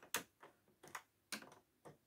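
About five light, sharp clicks, roughly every half second, of a metal hook tool working stitches on the plastic latch needles of a circular knitting machine.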